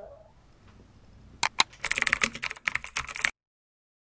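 Typing on a computer keyboard: two single key clicks about a second and a half in, then a quick run of keystrokes for about a second and a half that cuts off suddenly.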